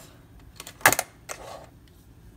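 Black hard plastic knife case being shut: a few sharp plastic clicks, the loudest a quick cluster of snaps about a second in as the lid and latches close.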